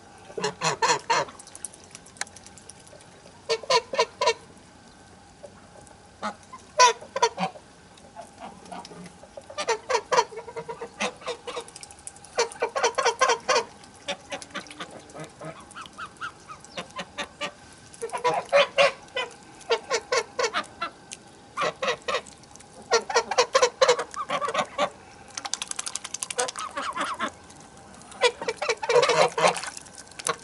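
A flock of white domestic geese honking in bouts of rapid calls, one bout every few seconds: the geese are calling to one another.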